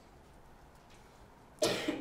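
Quiet room tone, then near the end a man's single short cough, clearing his throat.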